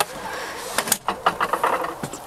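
A composting toilet box pulled out from under a bench on heavy-duty 500-pound drawer slides, the slides running out with a string of short clicks and rattles.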